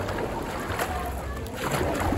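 Dragon boat paddle blade catching and pulling through pool water, splashing near the start and again near the end. A steady low rumble of wind buffets the microphone underneath.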